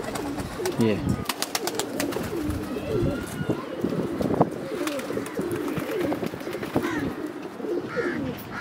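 Domestic pigeons in a loft cooing, several birds' coos overlapping throughout, with a few short sharp clicks about a second in.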